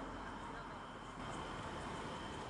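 Faint, steady background hiss and hum, with a thin, steady high tone that returns about a second in. No distinct event stands out.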